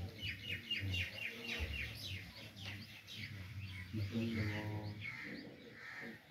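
Small birds chirping: a quick run of short, high, falling chirps, about four or five a second, that thins out to scattered calls after about three seconds.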